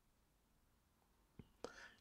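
Near silence in a pause between spoken sentences, broken near the end by two faint mouth clicks just before the voice resumes.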